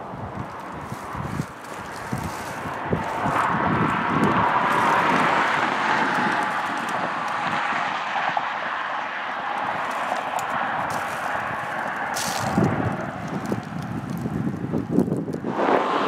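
Road traffic passing on a nearby highway: a steady tyre-and-engine rush that swells over a couple of seconds and slowly fades, with low rumbles of wind on the microphone near the start and near the end.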